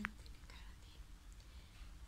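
A girl whispering softly, after one quietly spoken word at the very start.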